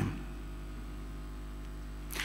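Pause between speech: a steady low electrical hum with faint hiss, the background tone of the sound system.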